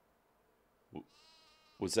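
A sheep bleating once, faintly, about a second in, from a film trailer's soundtrack; a man starts speaking near the end.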